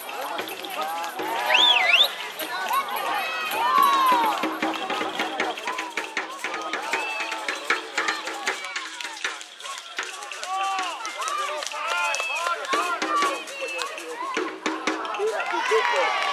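Many voices shouting and calling over one another at a youth football match, spectators and young players together, with scattered short knocks and taps.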